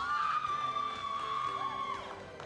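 A long, high-pitched scream of joy from an audience member, held for about two seconds, with fainter shouts from others, over quiet background music: a team celebrating being named a finalist.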